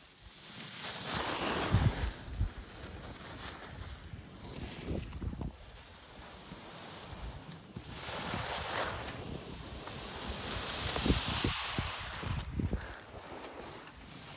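Skis hissing as they scrape and carve across packed snow, with wind buffeting the microphone of a camera carried by a moving skier. The hiss swells twice, about a second in and again in the second half, with a few sharp low gusts.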